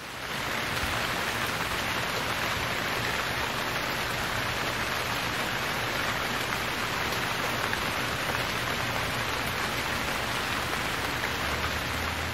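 Steady rain falling on the forest, an even hiss that fades in over the first second and holds level.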